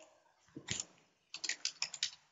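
Typing on a computer keyboard: a single click a little over half a second in, then a quick run of about five keystrokes near the end as a filename is entered.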